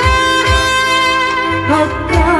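Backing music for a sung cover in an instrumental break between vocal lines: a held lead melody over low drum beats, with no singing.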